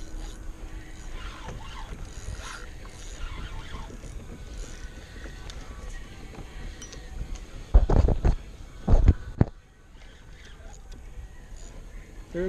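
Steady wind and water noise around a small fishing kayak, broken by two loud, low thumps about eight and nine seconds in.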